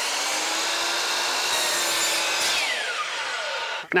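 DeWalt compound miter saw running at full speed as it makes a test cut through crown molding. Near the end its motor whine falls steadily away as the blade coasts to a stop.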